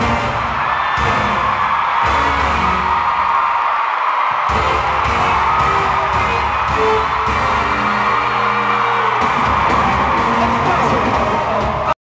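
Loud live pop music with a heavy bass beat through an arena sound system, with a crowd screaming and whooping over it. The bass drops out briefly about two seconds in, then comes back.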